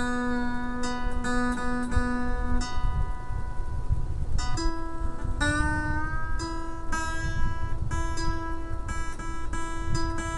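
Steel-string acoustic guitar notes plucked repeatedly and left ringing, first the B string and then, about four and a half seconds in, the high E string. It is checking standard tuning string by string against an online tuner's reference notes, and both strings are in tune.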